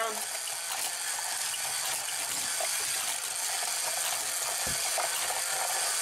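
Motorized Hot Wheels Power Tower wall-track set running steadily: a continuous whirring clatter of its plastic gear and ratchet mechanism, with small clicks of die-cast cars on the plastic track and a dull knock near the end.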